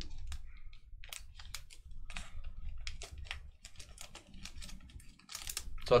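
Irregular light clicks of typing on a computer keyboard, several a second, with a short louder scrape near the end.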